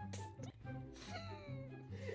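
Quiet background music with a high, wavering squeal that falls in pitch, from a man in a breathless fit of laughter that he can't get out.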